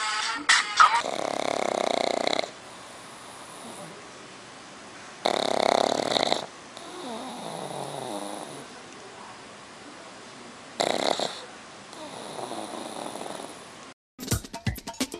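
A sleeping black pug snoring, with three loud snoring breaths about four to five seconds apart and softer, wheezy breaths in between.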